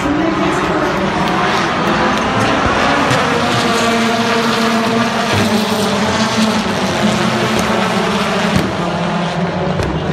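Rallycross race cars' engines running hard and revving up and down as several cars race round the circuit.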